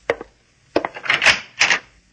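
Radio-drama sound effect of a door being opened: a couple of sharp clicks, then about a second of rattling from the latch and door.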